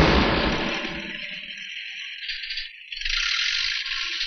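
Car seat upholstery being torn open in a film soundtrack: a sudden loud rip or hit that fades over about a second and a half, then a steady hissing tearing noise that grows louder about three seconds in.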